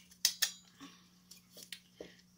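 Metal graphics-card cooler being handled and fitted against the card: two sharp clicks within the first half-second, then a few fainter taps.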